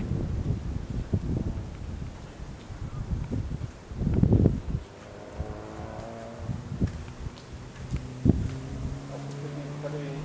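Wind gusting on the microphone, with short knocks and handling noise in the first half. From about halfway through, a steady low hum with a few overtones sets in and keeps going.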